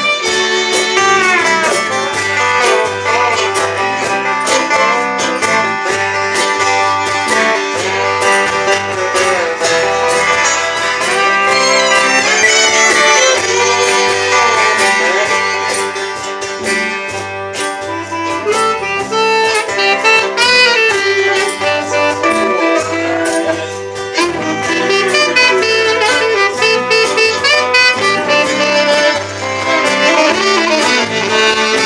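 Live acoustic band playing an instrumental passage: strummed acoustic guitars under saxophone and fiddle melody lines that slide between notes.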